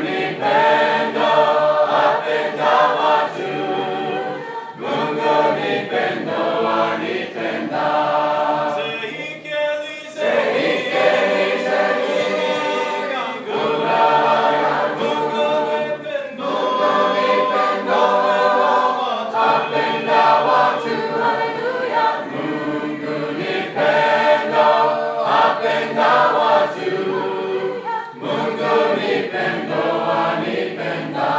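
Mixed choir of men's and women's voices singing a Swahili hymn in harmony, in long phrases with brief breaks between them.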